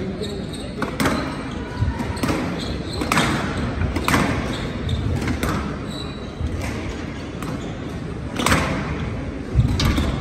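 Squash ball being struck by rackets and hitting the walls of a glass squash court during a rally: sharp, echoing hits coming unevenly, about one a second.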